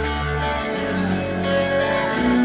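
Live pop band playing through a large stage PA, sustained chords over a steady bass with no vocals, as heard from within the audience.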